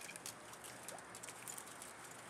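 Chicken wire being rolled and squeezed into a cone by hand, giving faint, scattered crinkling ticks of wire on wire.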